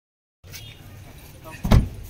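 A car door shut once with a heavy thump, against faint voices of the people around it.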